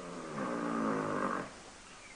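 A mare in labour groaning: one drawn-out low groan of about a second and a half that fades out.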